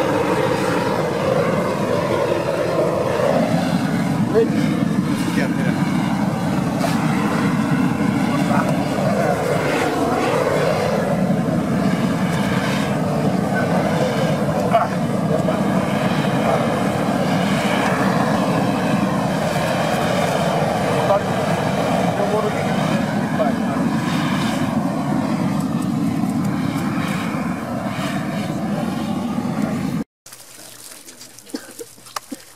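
Propane gas torch burning with a steady, loud rushing noise as its flame singes the bristles off a slaughtered pig's carcass.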